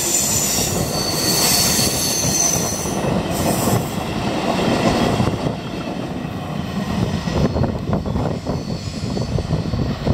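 Freight train container wagons rolling past close by, their wheels rumbling steadily on the rails, with high-pitched wheel squeal over the first few seconds.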